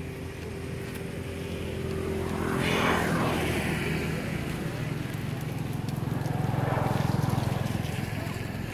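A motor vehicle engine running close by, with a steady low hum that swells about three seconds in and again, louder, near the end, as vehicles pass.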